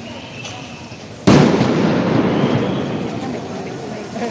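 A single loud bang of a police tear gas canister going off about a second in, followed by a noisy tail that dies away over the next couple of seconds.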